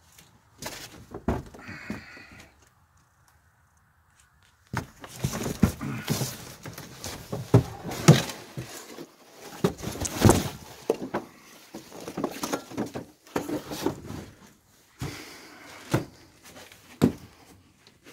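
Footsteps and knocks on old, weak wooden floorboards: irregular thumps and clunks, with a pause of about two seconds a few seconds in.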